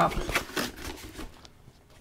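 A few light taps and rustles of thin printed cardboard being handled. They are bunched in the first half second and die away by about a second and a half in.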